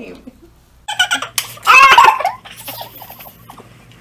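People laughing: a loud burst of laughter starts about a second in and dies down a second later, with more laughter right at the end.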